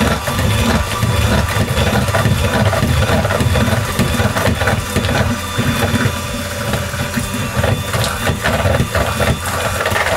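Electric hand mixer running steadily, its beaters churning cake batter in a bowl.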